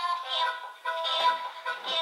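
A children's song with singing, played back by a toy piano-book's small built-in speaker in melody mode: thin, with hardly any bass.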